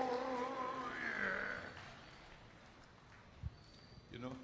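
A man's voice through the stage PA holds one long drawn-out vowel that trails off about a second and a half in. After that there is only faint open-air background, with a single low thump near the end.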